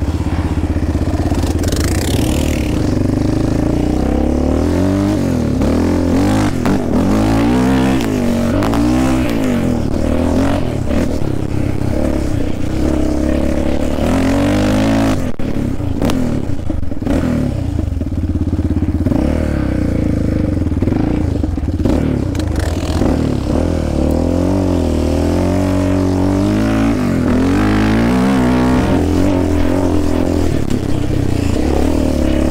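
Yamaha Raptor 700R sport ATV's single-cylinder four-stroke engine running hard under way, its pitch rising and falling over and over as the throttle is worked and gears change.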